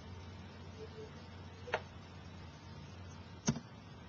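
Two short clicks about a second and three-quarters apart, over a faint steady hum, as a presentation slide is advanced.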